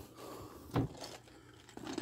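Cardboard boxes being handled, faint, with one brief knock nearly a second in and a little more handling noise near the end.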